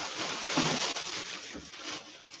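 Clear plastic bag and cloth rustling and crinkling unevenly as they are handled, fading near the end.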